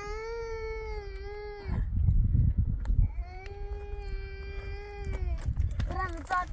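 A puppy crying in two long, drawn-out whines, each about two seconds and held at a steady pitch, with a low rumble between them.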